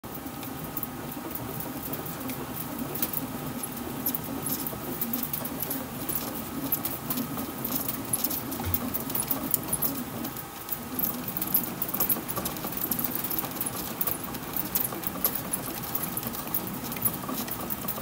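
2023 Rawlings Icon composite baseball bat being rolled by hand between the rollers of a bat-rolling machine. Its barrel gives off an irregular crackle of small clicks as the composite breaks in. Under it runs a low steady hum that stops about ten seconds in.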